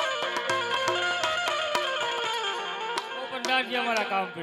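Live Indian folk instrumental accompaniment: a sustained melody line over regular hand-drum strokes. Near the end a man's voice comes in over the music.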